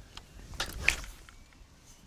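A rod swung hard through a cast to fire a groundbait ball from a catapult-style pouch hung from the rod: a quick rising whoosh that ends in a sharp snap about a second in.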